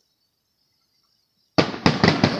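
Near silence, then about a second and a half in an aerial firework bursts: a loud sudden report followed quickly by sharp cracks that ring out.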